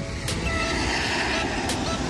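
Steady mechanical background noise with a faint hum, and a short click about a quarter second in.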